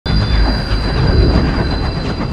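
High-speed train rushing past: a loud, steady deep rumble with a thin high whine over it.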